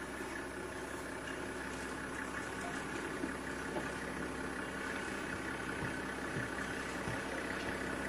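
Safari game-drive vehicle's engine idling steadily, a low, even hum.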